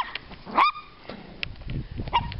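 Small dog giving one short, rising yip about half a second in.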